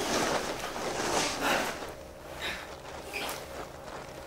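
Scuffling and rustling of bodies and costume cloth in a fight, with a few soft swishes; the sounds grow quieter in the second half.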